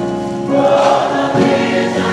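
Gospel choir singing in full voice, a new phrase coming in about half a second in.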